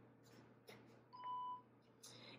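PenFriend voice labelling pen switching on: a faint click, then a single short steady beep lasting about half a second.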